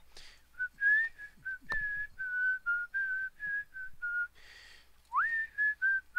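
A man whistling a tune in short notes, with a quick upward slide into a note about five seconds in and breaths between phrases. A light knock comes a little under two seconds in.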